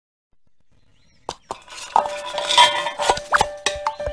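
Cartoon sound effects: after a quiet first second, a quick run of pops and clinks with a couple of short rising boings, while a held musical note comes in about two seconds in.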